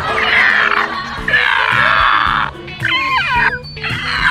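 A man imitating a dinosaur with his voice: two long roars of about a second each, then a short gliding squeal, over background music.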